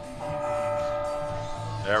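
A single stroke of a clock-tower chime: one steady bell tone with several pitches ringing together for about a second and a half, fading slightly.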